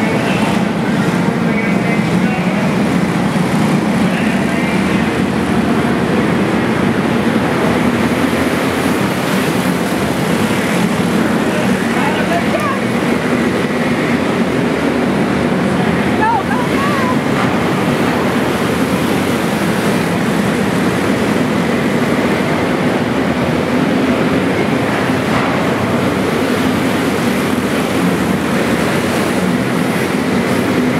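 Steady noise of several racing kart engines running, echoing in an enclosed arena, with spectators talking over it.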